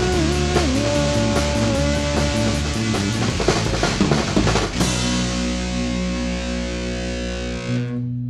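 Rock band with distorted electric guitar, bass and drum kit playing the closing bars of a song; about five seconds in the drums stop and a final distorted chord is left ringing.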